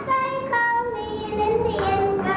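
A young child singing, holding each note for about half a second to a second, the pitch stepping from one note to the next.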